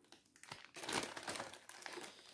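Clear plastic bag of puzzle pieces crinkling as it is handled: a dense run of crackles starting about half a second in.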